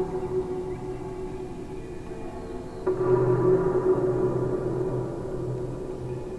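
Electroacoustic music built from slowed-down recordings of bamboo and metal wind chimes: low, sustained, gong-like ringing tones. A fresh cluster of chime notes strikes a little before the halfway point and slowly dies away.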